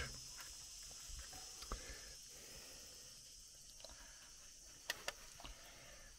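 Faint scattered knocks and scuffs of a person climbing down an aluminium ladder, with a low steady hiss; two sharper clicks come about five seconds in.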